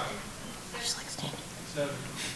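Quiet, indistinct voices: a few short spoken fragments from people in the room.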